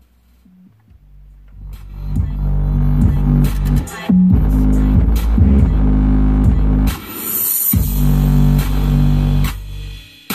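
Bass-heavy music played loud through a Volkswagen Caddy's factory car stereo with the bass turned up, heard inside the cabin. It fades in over the first two seconds and breaks off briefly about four and about seven and a half seconds in.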